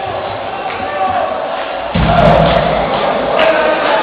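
A live heavy metal band in a hall, heard through a camera microphone. A voice and crowd noise fill the first half, then about halfway through the band comes in with a sudden loud hit of drums and bass and keeps playing.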